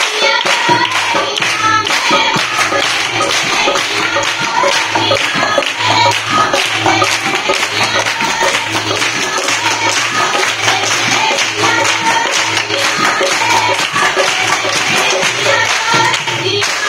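Punjabi gidha music: women singing boliyan over rhythmic group hand clapping and a steady low drum beat.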